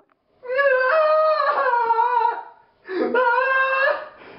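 A young man crying out in two long, high-pitched wails, the second shorter, as if sobbing in distress.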